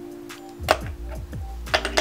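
Background music with a sharp click about a third of the way in and a few lighter clicks near the end: hot rollers and their clips being set down as they are put away.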